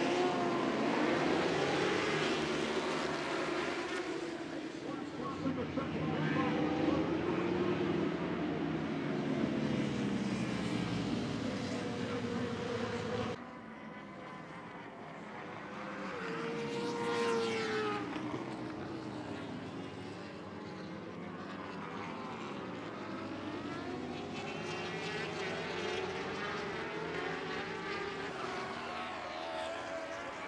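Superbike racing motorcycles at full throttle: the pack accelerates hard off the start, engines revving up through the gears. After an abrupt cut about 13 seconds in, the sound is quieter, with bikes going by one or two at a time, each engine note rising and then falling as it passes.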